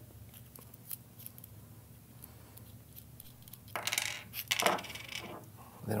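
Light metallic clinks and rattles as a small brass solenoid valve is taken apart by hand. There is a faint click about a second in, then a short cluster of clinks about four seconds in as the steel retaining nut and the coil come off and are set down on a wooden table.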